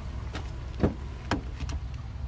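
Two sharp clicks over a low steady rumble, the louder one a little under a second in and the other about half a second later: the rear door latch of a Chevrolet Suburban being released and the door swung open.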